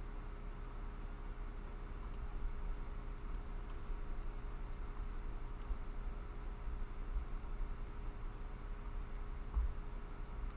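Steady low background hum with a few faint computer-mouse clicks, about six spread between two and six seconds in.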